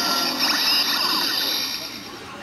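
DX Build Driver toy belt playing the tail of its electronic transformation sound effects through its small built-in speaker. A high, hissy sweep rises about half a second in, then the sound fades away near the end.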